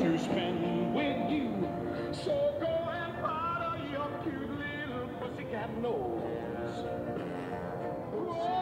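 A song with singing played outdoors from a small Beason portable Bluetooth speaker mounted on a moving electric unicycle, growing a little fainter as it moves away.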